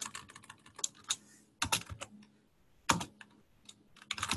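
Typing on a computer keyboard: a quick run of keystrokes at first, then a few short clusters of key presses with pauses between.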